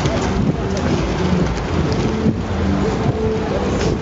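Steady low rumble of wind on the microphone of a camera carried while cycling in a large crowd of riders, with voices faintly mixed in.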